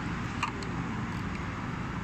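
Steady road-traffic rumble, with one short click about half a second in.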